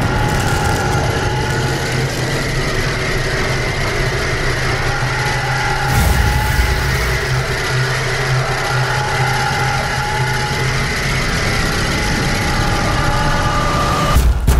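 Loud, steady, sustained drone of several held tones, typical of horror trailer sound design, with a low boom about six seconds in.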